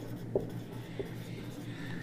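Marker pen writing on a whiteboard, with two light taps, over a steady low hum.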